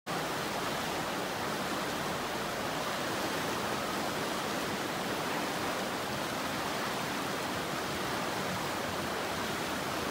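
Canal water rushing over a low weir: a steady, even rush of white water that begins abruptly and holds at one level throughout.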